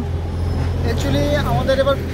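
A steady low rumble of outdoor background noise, with a person's voice starting about a second in.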